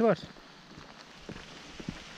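Light rain falling: a faint steady patter with a few scattered drops ticking.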